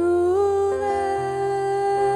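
A woman singing a worship song, sliding up into one long held note, with a bass guitar playing low notes underneath.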